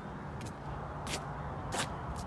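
Footsteps scuffing on a concrete lot, a few short sharp steps about two-thirds of a second apart, over a low steady background rumble.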